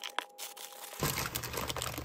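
A clear plastic bag full of jigsaw puzzle pieces crinkling as it is handled, starting about a second in. Two sharp clicks come just before it, near the start.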